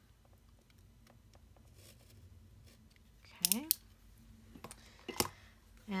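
Snap-off utility knife slitting the tape around the edge of a round pulp-board box: faint scraping with small ticks, then a sharp click near the end.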